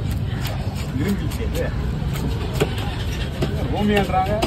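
Short scraping strokes of a hand fish scaler rasping the scales off a large red fish on a wooden block. Under them runs a steady low rumble, with voices in the background.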